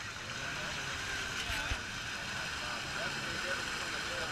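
Snorkeled ATV engine running steadily while bogged in deep mud, with a murmur of spectator voices behind it. A brief thump about a second and a half in.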